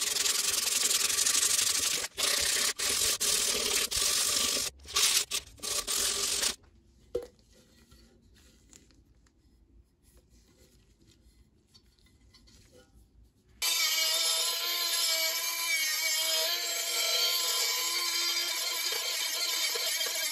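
Hand sanding with coarse 40-grit sandpaper rubbed over the copper body of an old acetylene lantern, in strokes with short breaks, stopping about six seconds in. After a near-silent pause with one small knock, a rotary tool fitted with an abrasive stone starts suddenly and runs steadily against the lantern's metal rim, its pitch wavering slightly.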